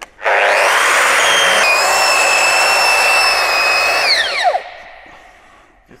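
Festool RAS 180 E disc sander, fitted with 120-grit paper, starting up and sanding a timber beam: a loud steady whine over rough sanding noise, its pitch dipping once about a second and a half in. About four seconds in it is switched off and winds down with a falling whine.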